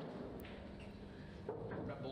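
Quiet room tone with a steady low hum, and a faint knock about a second and a half in.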